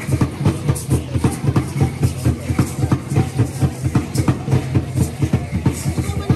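Drumming for an Aztec-style dance: a fast, even beat of about five strokes a second.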